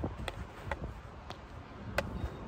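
A field hockey stick tapping a hard plastic hockey ball on artificial turf while dribbling: about four sharp clicks at uneven spacing, the last the loudest.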